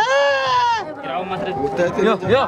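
A person's drawn-out, high-pitched call lasting under a second, followed by chatter.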